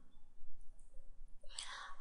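A pause between a man's sentences: faint room noise, then a short audible in-breath in the last half second before he speaks again.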